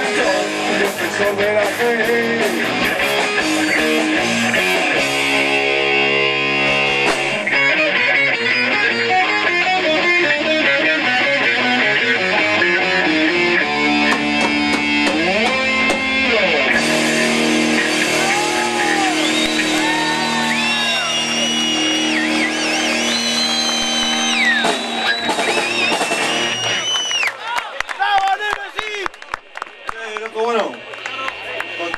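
Live rock band playing: electric guitars over bass and drums. Through the second half a lead line of long held notes bends up and down. The song stops near the end.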